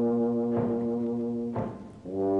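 Background music of brass instruments holding one long sustained chord, which fades away near the end.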